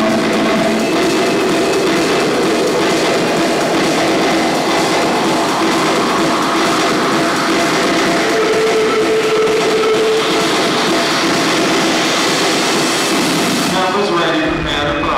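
Loud electronic dance music played over a big sound system during a breakdown: no kick drum or bass, only a dense wash of noise with a few held synth notes.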